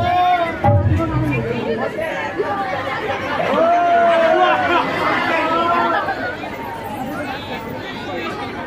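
Several people talking at once in lively, overlapping chatter, dropping slightly in loudness near the end.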